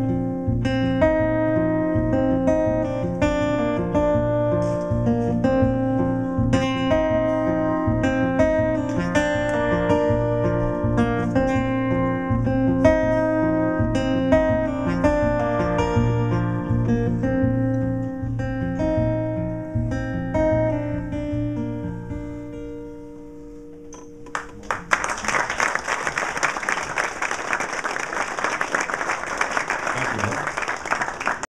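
Acoustic guitar playing the instrumental close of a song in a steady picked rhythm, slowing and fading out a little over 20 seconds in. Audience applause breaks out about 25 seconds in and continues to the end.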